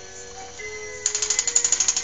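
A child's electronic toy playing a simple tune in thin, steady tones; about a second in, a rapid mechanical clicking rattle starts over it, roughly a dozen clicks a second.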